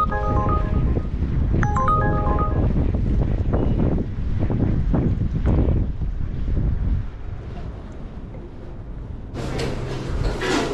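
Wind buffeting the microphone, a loud low rumble that eases off about seven seconds in, with two short phrases of background music near the start.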